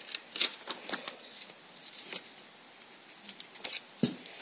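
Scissors snipping paper in a scattering of short, quiet cuts, making two small slits in a paper template.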